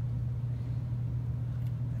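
A steady low hum with no other clear sound over it.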